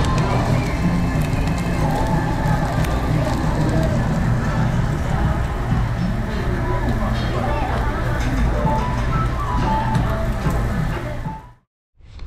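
Background music with voices underneath, fading out near the end.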